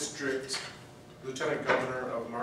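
A man speaking in a hall, with a short pause about halfway through.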